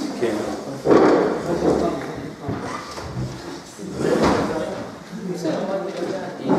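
Several people talking close by at once, with paper handling and a few knocks or bumps from things being moved on a desk.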